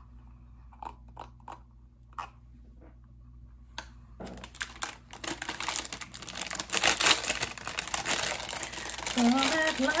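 A few faint clicks, then from about four seconds in a clear plastic gift bag crinkling and rustling steadily as it is handled and opened, growing louder. A woman starts singing near the end.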